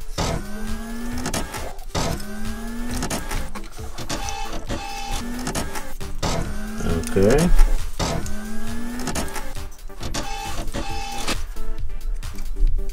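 Background music: a looping electronic track with a rising synth figure that repeats about every two seconds over a steady beat.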